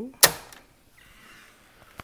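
A single sharp clunk of a Technics cassette deck's mechanical piano-key transport button being pressed down, about a quarter second in.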